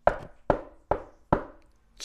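Four sharp knocks on a hard surface, evenly spaced at a little over two a second, each dying away quickly. They are rapped out to show how hard the waffle batter had set, "like quick-setting cement".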